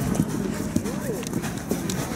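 Hoofbeats of racehorses walking, an irregular clopping, over a background of people talking.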